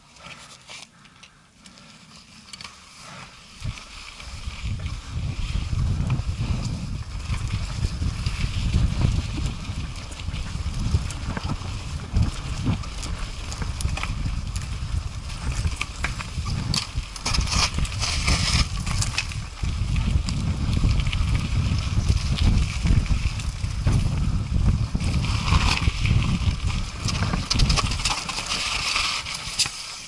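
Mountain bike riding down a rocky, gravelly trail, heard through a helmet-mounted action camera: wind buffeting the microphone with a loud low rumble, and the tyres and bike clattering over stones. It starts quiet, picks up about four seconds in, and eases off just before the end.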